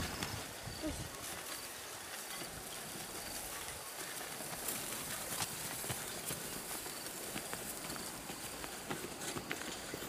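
Water buffalo dragging a wooden harrow over dry ploughed soil: scattered plodding steps, knocks and scrapes of clods over a steady outdoor hiss.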